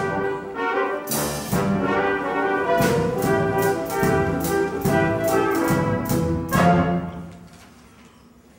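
Brass-led show band playing a short, brassy scene-change tune over sustained chords, with repeated sharp drum and cymbal hits. The music dies away about seven seconds in.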